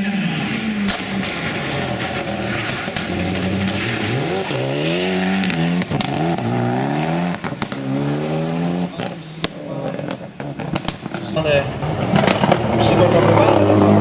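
Syrena Meluzyna R Proto rally car engine revving hard as the car accelerates away, its pitch climbing and dropping several times in quick succession with each upshift, with a few sharp cracks among it. A public-address announcer's voice comes in near the end.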